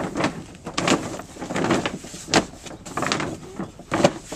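Sheet of reinforced-polyethylene pond liner crinkling and rustling as it is pushed and stepped down into the pond's corners, a dense, irregular run of short crackles.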